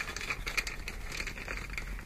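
Soft crinkling and scattered small clicks of small fishing tackle, wire-trace thimbles, being handled in the hands.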